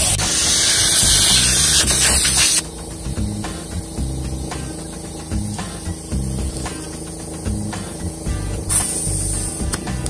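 Air hissing out of a tyre's valve stem through a screw-on Staun tyre deflator as the tyre is aired down toward a preset pressure for off-road driving. The hiss is loud for about the first two and a half seconds, then cuts off suddenly, and a shorter hiss comes back near the end.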